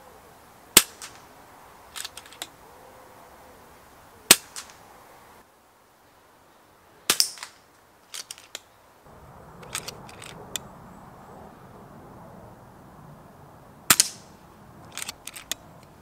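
FX Dynamic .177 sub-12 ft-lb PCP air rifle with a sound moderator, firing single shots: about four sharp cracks, several seconds apart, each followed by lighter clicks and taps.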